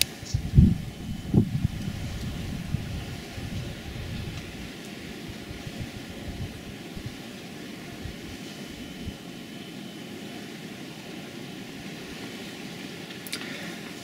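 Wind buffeting the microphone: low, gusty noise that is strongest in the first couple of seconds, then settles into a steadier low rush.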